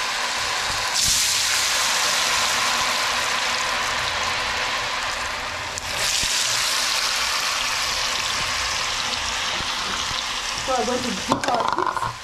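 Potato chips deep-frying in a pan of hot oil: a steady sizzle that gets louder about a second in and again around six seconds in.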